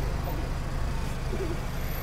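Steady low rumble of road traffic passing close by.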